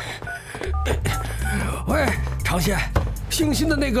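Mobile phone keypad dialing tones: a quick run of about five short two-note beeps in the first second and a half, as a number is keyed in.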